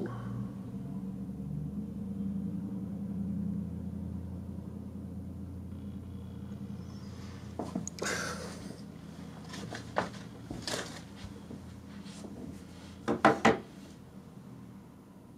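A steady low room hum with scattered handling noises as someone moves about a small room: a rustle about eight seconds in, a couple of single sharp clicks a little later, and three quick knocks near the end, the loudest sounds.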